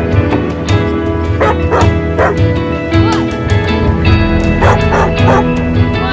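Dog barking over background music with a steady beat: three barks about a second and a half in, and three more near the end.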